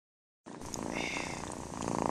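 A cat purring, starting about half a second in, with a short higher-pitched sound about a second in.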